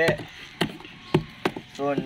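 Cardboard firework packets being handled: about four sharp knocks, roughly half a second apart.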